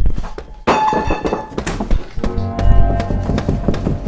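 A wooden table rocking back and forth and knocking rapidly and repeatedly against the floor, with music over it.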